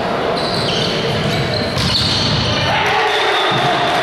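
Volleyball rally in an echoing sports hall: shouting players and spectators' voices blend into a steady din, with the thud of the ball being hit and short high shoe squeaks on the court.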